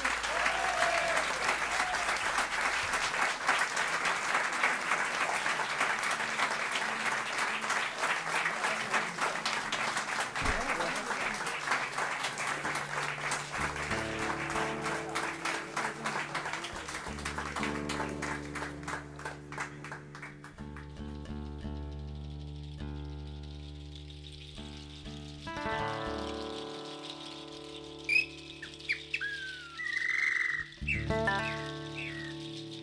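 Audience applauding, the clapping thinning out over about twenty seconds as the band starts the next piece with sustained low tones. Near the end come a few short rising whistle-like calls.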